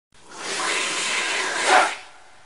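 A hissing whoosh sound effect that swells over about a second and a half, peaks just before the end and then drops away.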